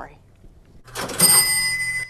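Cash register ringing up a sale: a clatter about a second in, then a bell ringing as the cash drawer opens.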